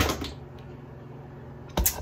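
Handling noise: a short click at the start and a louder knock near the end, with low room tone between them.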